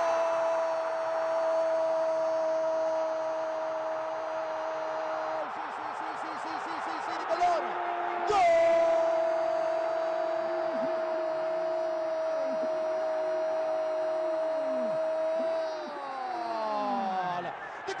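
Football commentator's drawn-out "gooool" scream for a goal: one long held shout, then, after a quick breath, a second even longer one that slides down in pitch and trails off near the end, over steady stadium crowd noise.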